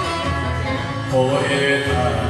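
Enka karaoke backing track playing with a man singing along into a handheld microphone; a new sung note comes in about a second in.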